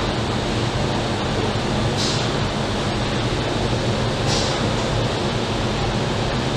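Steady factory-floor machinery noise from an automated stator-handling line, with a short air hiss about every two seconds as pneumatic valves vent.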